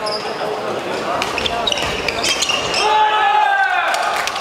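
A badminton doubles rally on an indoor court: sharp racket hits on the shuttlecock and shoe squeaks on the court floor, then players' voices near the end as the point is won.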